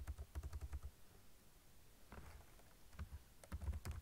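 Typing on a computer keyboard in quick bursts of keystrokes: a fast run in the first second, then a few scattered keys and another run near the end.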